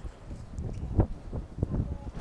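Footsteps on paving stones: a run of dull thumps, the loudest about halfway through, over a low rumble of wind on the microphone.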